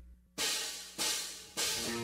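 Drum-kit cymbal struck three times, evenly about 0.6 s apart, each ringing briefly: a count-in for the next song. The full band comes in right at the end.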